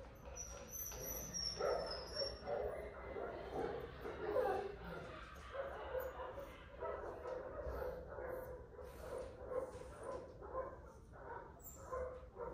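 Miniature poodle puppy whining in short, repeated calls.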